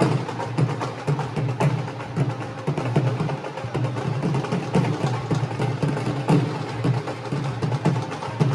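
Music led by a fast, steady drum beat of repeated sharp strikes.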